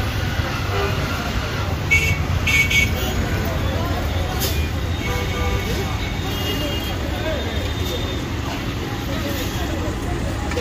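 Busy street traffic: a steady low rumble of vehicle engines with people talking close by, and two short high beeps about two seconds in.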